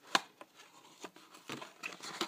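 A small cardboard box being cut open with a plastic cutter: a sharp click a moment in, then light scratching and rustling of card.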